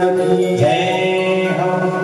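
A man singing a Hindi devotional bhajan in long, held, gliding notes over a steady low drone.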